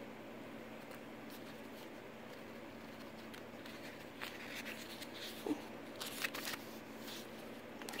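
Faint handling of paper: pages of a small handmade journal and a cardstock tag being turned and moved, with a few light rustles and flicks in the second half over low room hiss.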